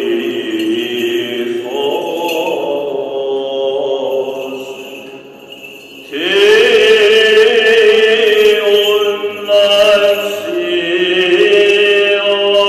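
Greek Orthodox Byzantine chant: a male voice sings long, slowly ornamented held notes and fades low around five seconds in. About six seconds in, a louder voice comes in with an upward swoop and carries the chant on in long held notes.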